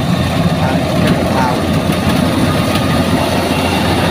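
Tracked rice combine harvester running steadily as it cuts standing rice, its engine and cutting and threshing machinery making a loud, continuous low sound.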